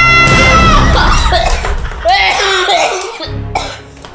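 A man's long, loud yell, 'aaaaaa', held steady and then breaking off within the first second. Rough laughing and shouting from the men follows, over background music.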